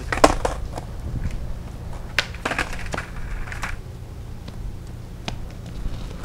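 Skateboard clacks on concrete: a handful of sharp knocks of board and wheels hitting the pavement, the loudest about a quarter second in and the rest scattered over the following seconds, over a steady low rumble.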